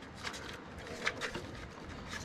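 A few faint, light clicks and taps from hands working at the fuel injectors on the fuel rail of a Toyota 3.4 V6, with the clearest about a quarter second and about a second in.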